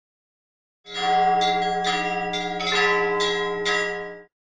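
Church bells ringing: after about a second of silence, a quick run of about seven bell strikes, roughly two a second, sounding over a deep, held bell tone.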